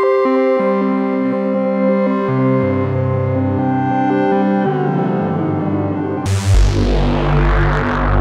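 Arturia MiniFreak hybrid synthesizer playing a preset: sustained chords over a bass line that steps between notes. About six seconds in, a sudden bright, noisy sweep comes in over a deep bass note and is the loudest part.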